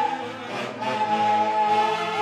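Live dance band music from saxophones, clarinets and a drum kit, with the melody holding one long note through the second half.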